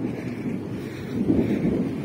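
Wind buffeting the phone's microphone, an uneven low rumbling noise that swells and fades.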